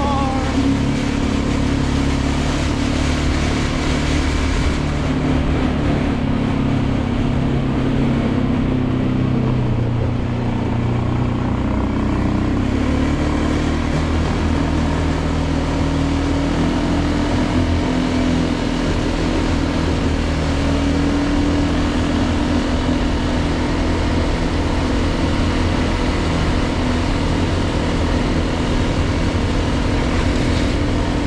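ATV engine running steadily while riding along, its pitch shifting a little with speed, over steady road noise.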